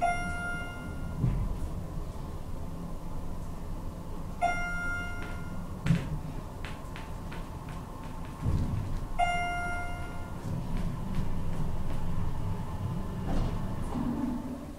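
Elevator car travelling down with a steady low rumble and a faint steady whine, which stops shortly before the end. A single-pitch electronic chime dings three times, about four and a half seconds apart, and a few light clicks fall between the second and third dings.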